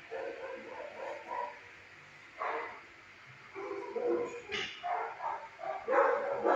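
A dog barking in short bursts: a few in the first second and a half, one about two and a half seconds in, then a quicker run of barks over the last two seconds.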